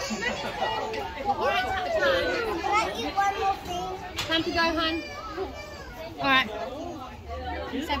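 Many children's voices chattering and calling out at once, overlapping with other talk; one louder cry stands out a little past six seconds in.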